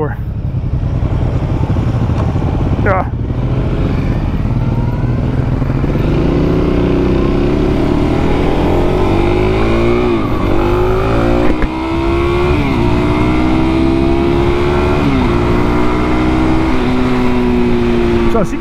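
Suzuki DR-Z400SM's single-cylinder, carbureted engine accelerating up to speed through the gears: its pitch climbs, then drops sharply three times as it shifts up, over steady wind and road noise.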